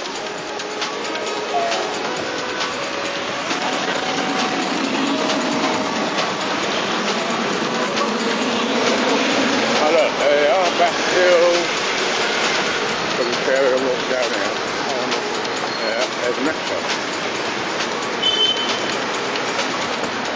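Busy city street noise picked up on a handheld camcorder: a steady wash of traffic with indistinct voices of people around.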